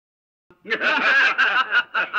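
A man laughing in a string of short, choppy bursts, starting about half a second in after a moment of silence.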